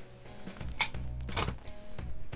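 Aluminium grill-grate panels clink twice against each other and the wire cooking grate as they are lifted off the grill, over background music.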